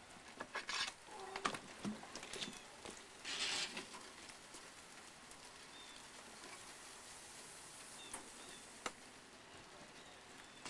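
Faint handling sounds as a raw turkey is set on a barrel smoker's grate: scattered light knocks and a brief sizzle-like hiss in the first few seconds, then a faint steady hiss, with a single sharp clack near the end as the smoker lid is shut.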